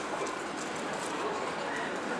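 Indistinct chatter of a crowd of people, many voices blending together with no clear words.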